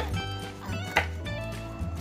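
Background music with a melody over a steady bass line. A kitchen knife chops lemongrass on a wooden cutting board, with sharp knocks at the start and about a second in.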